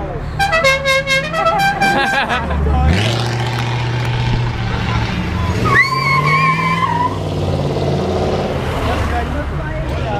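A car horn sounds several notes of changing pitch in the first two seconds. Then a big American car's engine picks up and runs as the car passes. A second horn blast comes about six seconds in and lasts about a second.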